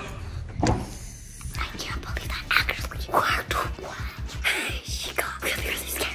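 Whispered speech over background music.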